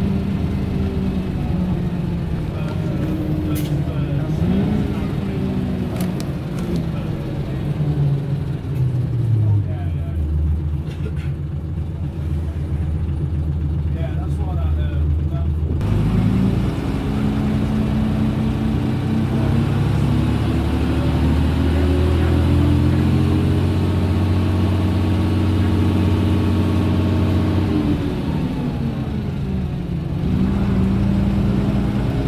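Leyland National Mark 1 bus's turbocharged Leyland 510 six-cylinder diesel, heard from inside the saloon while the bus is driving. The engine note climbs, drops about eight seconds in, then climbs again and holds before falling away near the end as the bus slows.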